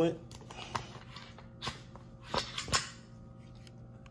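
A few short clicks and knocks spread over about two seconds as a Canik METE pistol is picked up and handled over its hard case.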